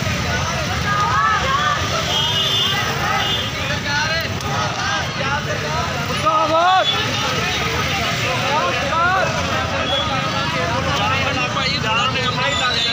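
Crowd of voices talking and calling out together over the steady rumble of street traffic and running vehicles.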